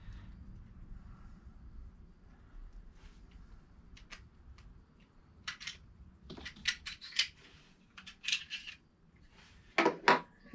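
Metal parts of a Sig P938 pistol clicking and scraping as it is stripped by hand, slide and guide rod being worked apart. The sharp clicks come in the second half, and a louder knock near the end comes as a part is set down on the countertop.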